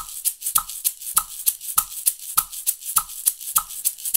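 A maraca shaken in an even eighth-note rhythm, about three crisp shakes a second, with the seeds rattling inside the shell. A metronome clicks about every 0.6 s, one click to every two shakes.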